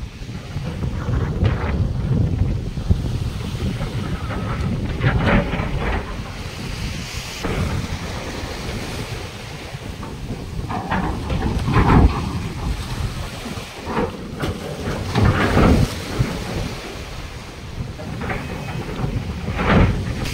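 Strong wind buffeting the microphone as a low rumble, over choppy sea waves slapping and splashing against a steel pontoon barge, with a few louder surges partway through.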